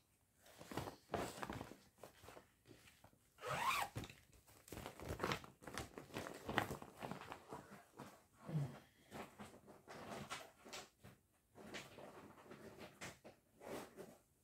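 Faint rustling, rasping and knocking of things being rummaged through and handled, with a longer zip-like rasp about four seconds in.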